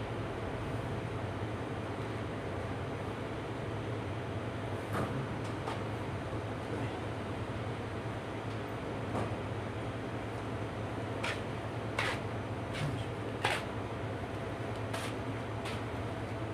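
Steady low hum of city background noise, with several short clicks and knocks scattered through the second half.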